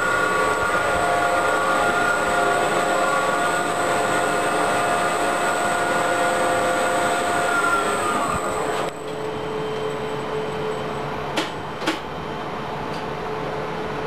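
LG-OTIS traction elevator machine running with a steady multi-tone hum and a thin high whine, winding down and stopping about eight and a half seconds in. A quieter steady machine-room hum follows, with two sharp clicks near the end.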